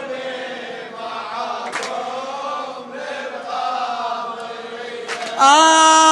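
A chorus of voices softly chanting a slow Arabic devotional melody in several overlapping lines. Near the end, a single loud male lead voice comes in on a long held note.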